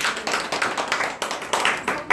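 A group of people clapping their hands, many quick overlapping claps.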